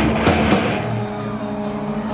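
Heavy metal band playing live: distorted electric guitar and bass ringing out on a low held chord, with a couple of drum hits in the first half-second.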